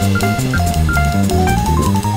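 Jazz combo playing a fast bebop tune: drum kit with cymbals and a quick walking bass line under a melody that climbs in steps near the end.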